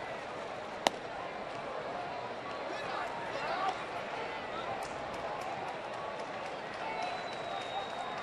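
Ballpark crowd murmur with scattered voices, and one sharp pop about a second in: a pitched baseball smacking into the catcher's mitt, called a ball.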